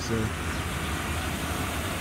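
Truck engine idling with a steady, low, even hum.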